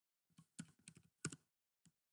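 Faint typing on a computer keyboard: a quick run of keystrokes in the middle, then a single keystroke near the end.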